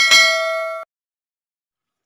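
Notification-bell ding sound effect: one bright chime of several steady tones, ringing for just under a second and then cut off abruptly.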